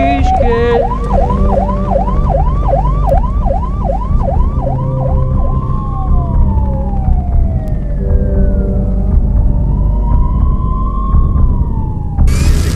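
Emergency vehicle sirens: a fast yelp of about two and a half rises a second for the first five seconds, then slow rising and falling wails, with several sirens overlapping over a low rumble.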